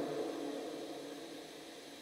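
A pause in amplified speech: the echo of the last words through the loudspeakers dies away over about a second and a half, leaving a faint steady hiss.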